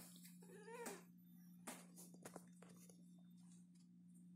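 A cat, held down by hand on a counter, meows once about half a second in, a short call that bends up and down in pitch. A few faint rustles and soft knocks follow as it is held.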